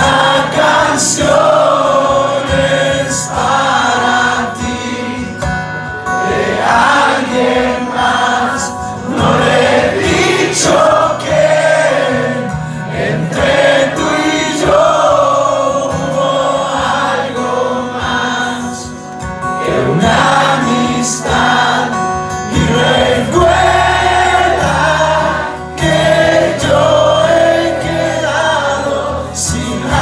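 A live band playing a song: guitars, bass and sung vocals.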